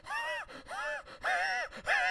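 A high-pitched voice making short non-speech cries, each rising and falling in pitch, about two a second.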